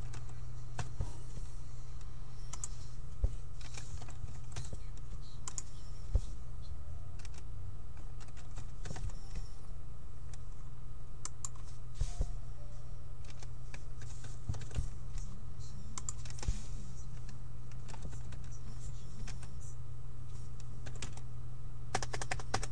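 Typing on a computer keyboard: irregular runs of key clicks over a steady low hum.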